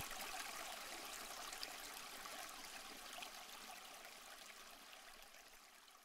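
Faint steady hiss of room tone with a couple of faint ticks, fading away near the end.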